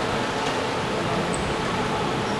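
Steady background murmur of an indoor sports hall, made of people and movement in a reverberant room, with one brief high squeak a little past halfway.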